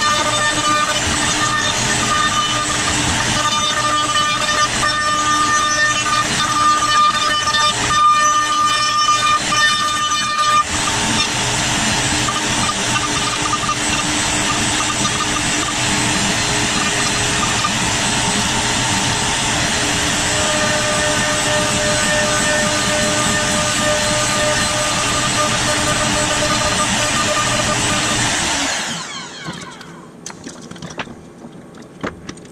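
CNC router spindle running and cutting the wooden bowl, a steady whine over cutting noise that changes character about a third of the way in as the cut changes. Near the end the sound winds down as the machine stops at the finish of the job.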